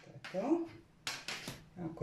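A woman's voice: a few short, broken-off spoken sounds in Croatian, not full words, ahead of her next sentence.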